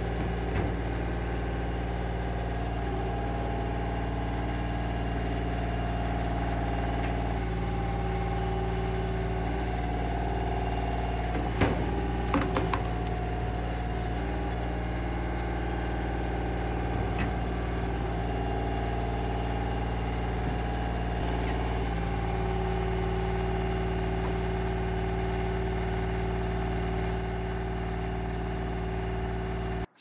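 Radiator-cooled engine driving a homemade vertical log splitter's hydraulics, running steadily with its note shifting slightly a few times. A few sharp knocks are heard about twelve seconds in, with fainter ones later.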